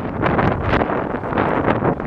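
Wind buffeting the microphone, with a large cloth flag on a pole flapping in the wind close by in many short, irregular flaps.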